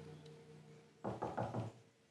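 A quick run of knocks on a door, about a second in, as soft background music fades out.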